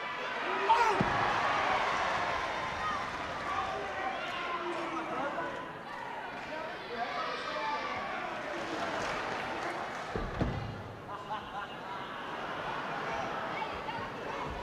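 Wrestling-hall crowd noise: many spectators' voices calling and shouting over one another, with a heavy thud about a second in and another about ten seconds in, typical of wrestlers' bodies hitting the ring canvas.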